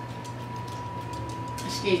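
Steady low electrical hum with a faint thin high tone: room tone. A woman's voice starts right at the end.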